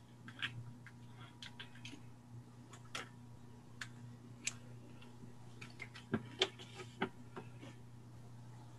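About a dozen light, irregular clicks and taps, several close together near the end, over a faint steady electrical hum. The clicks are typical of small objects being handled on a desk.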